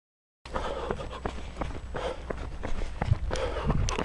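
Running footsteps on a paved road at about three strides a second, over a steady low rumble from the handheld camera being carried along. The sound starts about half a second in.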